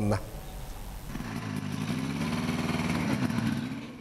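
Buran snowmobile engine running and pulling away, growing steadily louder for a couple of seconds and then dropping away near the end.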